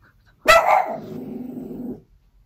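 A pet dog gives one sharp bark, then a lower, drawn-out vocalisation for about a second.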